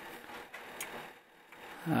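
A few faint, short clicks from a computer mouse over quiet room tone.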